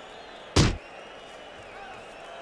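A boxing-glove punch landing: one heavy, sudden thud about half a second in, over a faint steady background.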